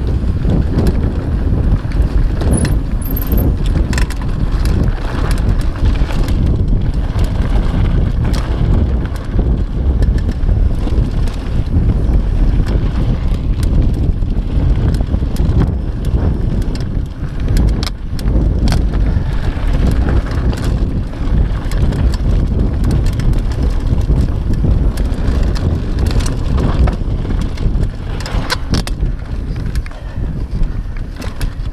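Mountain bike rolling fast down a dry dirt trail: wind buffeting the microphone over the tyres' rumble on loose dirt, with frequent rattles and clicks from the bike as it rides over rough ground.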